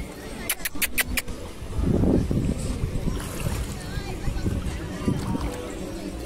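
Shallow sea water sloshing around a wading dog, under a background of voices and music. A few sharp clicks come between half a second and a second in, and a louder low rush of sound about two seconds in.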